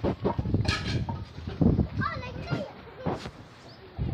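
Indistinct voices with scattered knocks and clicks; no engine is running.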